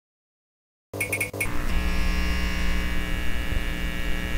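Electronic logo sting: four quick high blips about a second in, then a steady buzzing drone of stacked electronic tones.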